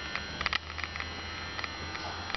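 Quiet room tone in a small room: a steady low electrical hum with a few faint, short clicks, about half a second in and again later.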